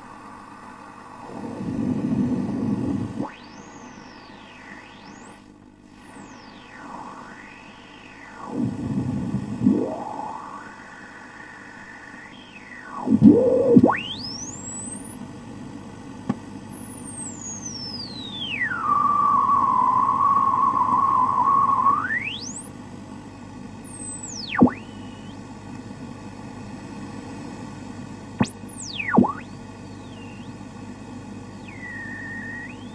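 Radio static with interference whistles that sweep up and down in pitch over a steady hiss and low hum, with a few louder surges of rushing noise. About two-thirds of the way through, one whistle holds on a steady pitch for about three seconds.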